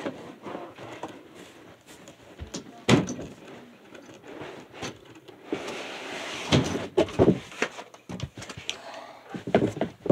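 A hoverboard being worked out of its cardboard shipping box: cardboard scraping and hollow knocks. One sharp knock comes about three seconds in, a scraping slide follows, then a cluster of knocks around seven seconds and a few more near the end.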